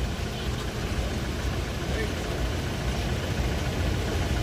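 Murmur of a crowd of onlookers over a steady low rumble.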